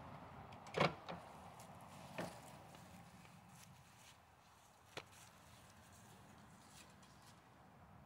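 A few brief knocks and clunks, the loudest about a second in and a sharp click around the middle, over faint outdoor background.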